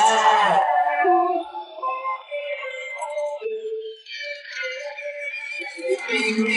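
Isolated band vocals, separated from the mix by AI vocal removal, with the rough, lower-quality sound that process leaves. Layered singing holds notes, then drops after about a second to quieter, long sustained tones.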